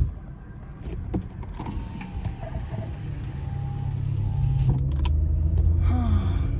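Road and engine rumble heard inside a moving car's cabin, growing louder over the seconds as the car gets going. A few faint clicks sound over it.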